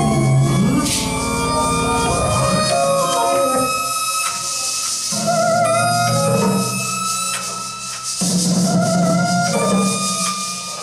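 Live band playing an instrumental passage with long held notes over drums and hand percussion.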